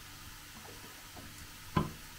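Faint room tone, then one short, sharp knock near the end.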